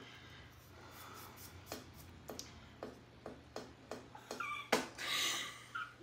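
A man's stifled giggling off to the side: faint snorts and puffs of breath about every half second, with a few faint higher laugh sounds near the end.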